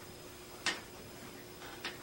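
Quiet room tone with a faint steady hum, broken by a short sharp click about two-thirds of a second in and a fainter click near the end.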